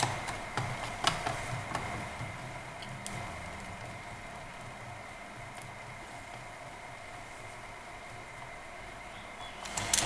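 A few small clicks and taps of a screwdriver and fingers on a laptop's plastic case and wireless card during the first three seconds, as screws are put back in. After that, only a faint steady hum.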